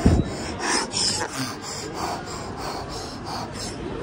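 A thump, then a run of short rubbing, rasping noises about twice a second on the microphone of a handheld phone being moved: handling noise.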